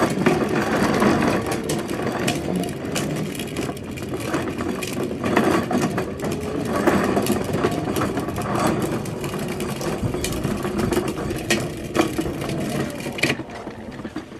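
Hard plastic wheels of a child's foot-powered ride-on toy car rolling and rattling over concrete, with scattered clicks and knocks. The noise drops off sharply near the end.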